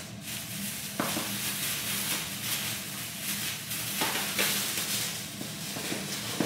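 Crinkly rustling of shopping bags and packaged items being handled, with a few light knocks.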